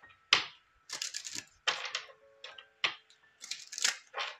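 A deck of tarot cards being shuffled by hand: clusters of sharp papery clicks and snaps, a few per second, with faint background music underneath.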